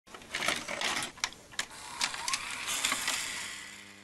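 VHS tape playback intro sound effect: static hiss broken by several sharp clicks, a short rising whine about two seconds in, then a mechanical whirr that fades out.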